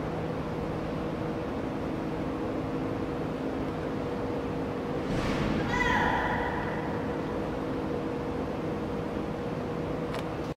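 A woman's shout from across a large, empty arena about six seconds in, arriving faint and echoing, with a brief falling whoosh just before it. A steady low hum runs underneath.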